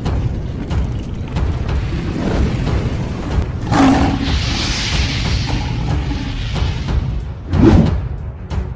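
Dramatic intro music with deep booming hits under a steady low rumble. A rushing, hissing sweep rises about halfway through, and a loud hit lands near the end.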